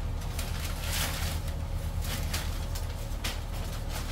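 Packing paper rustling and crinkling in short bursts as it is pulled out of a cardboard shipping box, over a steady low rumble.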